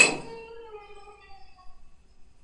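A block of dry ice set down in a glass beaker: a sharp clink, then the glass rings with several tones that fade away over about a second and a half.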